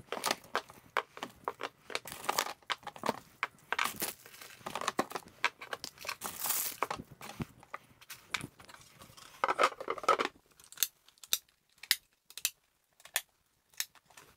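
Rolls of tape being set down and shuffled against one another in a plywood storage box: irregular knocks and rustles, busy for about the first ten seconds, then a few sparse clicks.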